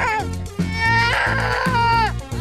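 A young child's high-pitched wailing cry, in two drawn-out wails with a falling pitch at the end of each, over background music with a steady low bass.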